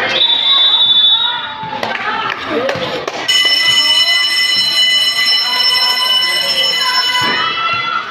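A short high whistle blast just after the start, then an electronic game buzzer sounding one loud, steady tone for about four seconds over crowd chatter.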